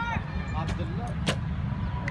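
Background chatter of voices over a steady low rumble, with two sharp clicks about two-thirds of a second and a second and a quarter in.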